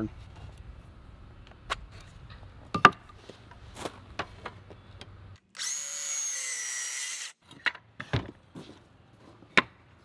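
Milwaukee M18 Fuel cordless circular saw cutting through a pine board, a steady high whine lasting about two seconds just past the middle. Before and after it, light knocks and taps of boards being handled and marked.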